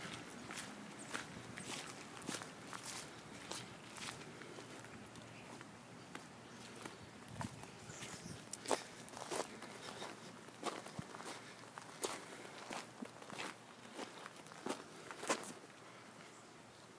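Footsteps of a person walking at a steady pace, about one and a half steps a second.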